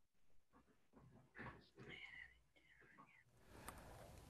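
Near silence, with a faint whispered or murmured voice about a second and a half in.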